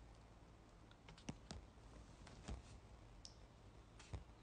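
Near silence broken by a few faint, irregular taps and clicks from a smartphone being handled and tapped on its screen, bunched around one and a half seconds and two and a half seconds in.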